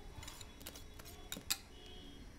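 Light, scattered clinks and taps of a metal wire whisk against a saucepan as the last of the lemon curd is scraped out into a glass bowl, with one sharper tap about one and a half seconds in.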